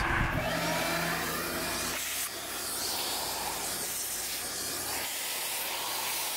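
Shop-Vac wet/dry vacuum running steadily.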